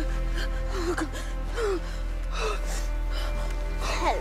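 A dying boy's gasping, whimpering breaths, three short strained gasps over slow, sustained film music.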